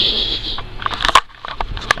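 Handling noise as the furry puppet is pushed against the camera microphone: a short rough hiss, then a string of uneven crackles and knocks.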